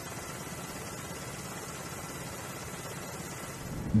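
Steady, even hiss-like noise with a low rumble underneath and no distinct events.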